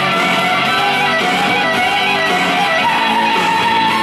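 Violin played live, carrying a melody of held notes with vibrato that steps up to a higher note about three seconds in. Underneath is a backing accompaniment with strummed guitar.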